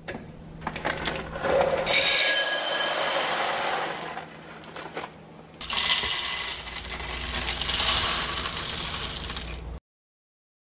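Whole coffee beans poured in a steady rush into an empty glass jar for about two seconds, then, after a short pause, poured from the jar into the plastic hopper of an espresso machine's grinder for about four seconds, cutting off suddenly near the end.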